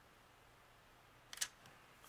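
Near silence, broken about one and a half seconds in by a brief soft click and rustle as metal tweezers and a clear sticker are handled against a paper planner page.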